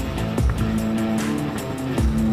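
Background music with a steady beat, about two beats a second, with held notes.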